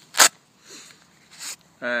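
A single short, sharp rasp from the knife's fabric case being handled, followed by a fainter rustle about a second and a half in.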